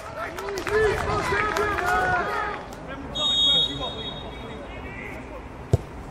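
Voices calling out for the first couple of seconds. Then a referee's whistle is blown once, briefly, about three seconds in, and a single sharp knock of a football being kicked comes near the end.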